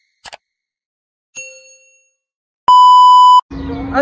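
Sound effects for an animated subscribe button: a brief swish, a short ringing chime about a second and a half in, then a loud steady beep lasting under a second around three seconds in.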